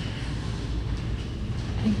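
Steady low rumble of background noise with no distinct events, and a spoken word beginning near the end.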